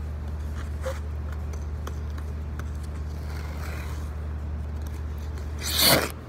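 Ice skate blades scraping hard across the ice near the end in a stop that sprays ice shavings, the loudest sound by far, swelling up and cutting off. Before it, a steady low hum with a few faint scuffs as the skater pushes up off the ice.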